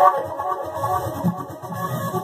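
Access Virus synthesizer playing a patch: a dense run of pitched synth notes that moves down into a lower register about a second in.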